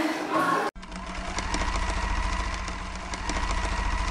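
Sound effect of a studio logo animation: a steady mechanical whir with a low hum and a faint, rapid ticking over it, starting abruptly under a second in.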